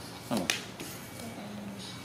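Hard plastic clicks from the parts of a red plastic toy shopping trolley being handled and knocked together, with one sharp click about half a second in. A short voice sounds alongside.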